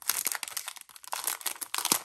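Clear plastic packaging sleeve crinkling and crackling as fingers handle it and pull it open around a notebook. The crackles come thick and irregular, with the loudest just before the end.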